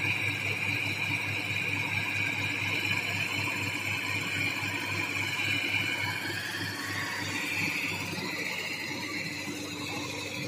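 Sonalika tractor's diesel engine running with a steady low pulsing beat as its hydraulics tip a loaded trolley, with a high whine over it that rises in pitch about seven seconds in.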